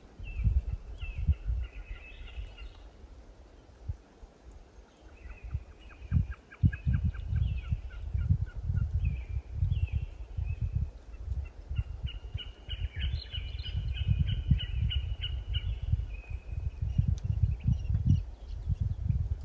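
Small birds singing: series of rapid repeated notes and trills, one stretch of song most prominent about two-thirds of the way in. Gusts of wind buffet the microphone throughout with an irregular low rumble, the loudest sound.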